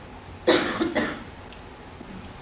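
A person coughing twice, about half a second apart.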